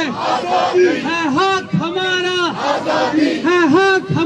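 Crowd of protesters shouting a slogan in unison, led by a man on a handheld microphone; short, loud shouted phrases repeat over and over.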